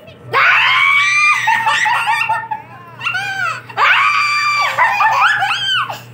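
A toddler shrieking with laughter: two long, loud, high-pitched shrieks, the second starting a little before halfway.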